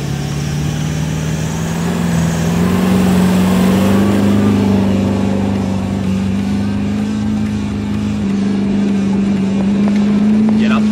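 A Toyota four-wheel drive's diesel engine working hard under heavy throttle, towing a caravan up a soft sand dune. The revs climb over the first few seconds, then hold steady under load.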